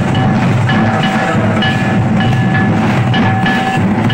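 Santali folk festival music led by percussion: drums beating a steady, driving rhythm, with short ringing tones recurring above them.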